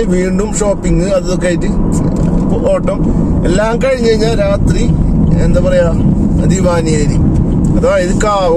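A man talking over steady road and engine noise inside a moving car's cabin.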